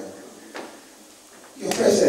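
A man's speech through a handheld microphone breaks off into a short pause, with a single click about half a second in. His speech resumes near the end.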